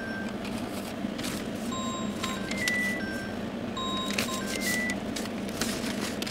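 Steady rumble of vehicles running near the track, with a short electronic beeping tune of a few notes repeating roughly every two seconds and scattered light clicks.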